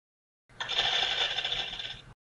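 Rapid mechanical clatter of a split-flap display sound effect, the flaps rattling through as the letters change; it starts about half a second in and stops just after the end.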